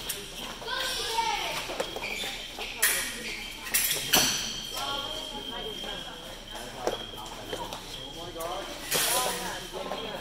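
A fencing bout with a few sharp clacks of blades and footwork on the strip about three to four seconds in. Right after them comes a high, steady electronic tone from the fencing scoring machine, the signal that a touch has registered. Voices talk in the background of the hall.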